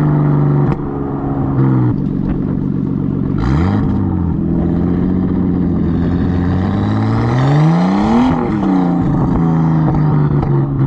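1992 Nissan Skyline's engine and exhaust while driving, heard at the rear of the car. The engine note rises briefly about three and a half seconds in, then climbs steadily and drops sharply just past the eight-second mark at an upshift, settling back to a steady cruise.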